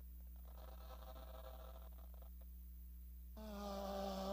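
Steady low electrical hum in a quiet pause. About three seconds in, a man starts singing a long held note through the microphone and it gets louder.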